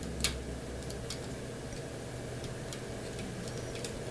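Small clicks of plastic model-kit armor parts being handled and opened: one sharp click about a quarter second in, then a few fainter ticks, over a steady low room hum.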